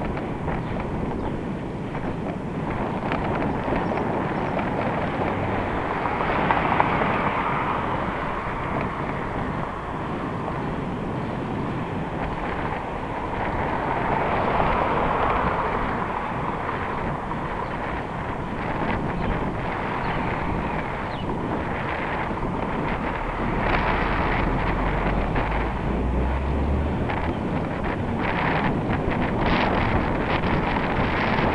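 Wind rushing over the microphone of a moving bicycle, mixed with passing street traffic. The noise swells twice, about 7 and 15 seconds in, and a deep rumble joins it from about 24 to 27 seconds.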